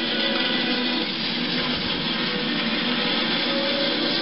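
Film soundtrack music playing from a CED videodisc on an RCA SelectaVision player, heard through a television.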